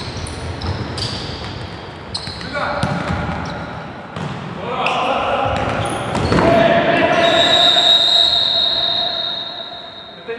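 Futsal play in a reverberant sports hall: trainers squeaking on the court floor and the ball being kicked, with players shouting. As a player goes down, the shouting rises, and a long shrill referee's whistle blast sounds near the end.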